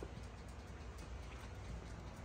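Faint room tone: a low, steady background hiss with no distinct sounds.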